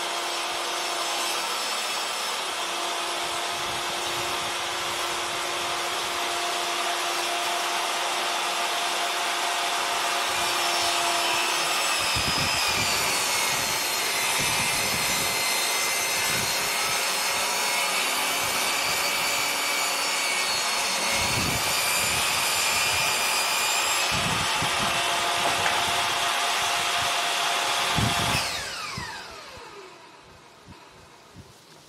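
Benchtop table saw running, its motor whine sagging in pitch while the blade cuts through a wooden plank for the middle part. It is switched off near the end, and the motor winds down with a falling whine.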